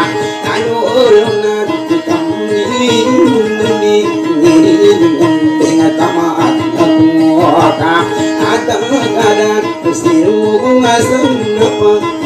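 Dayunday music: a guitar plucked in a repeating, drone-like figure under a sliding, ornamented vocal line.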